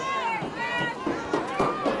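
Raised, high-pitched voices shouting and calling out across an outdoor football field, several overlapping, with a few short sharp sounds in the second half.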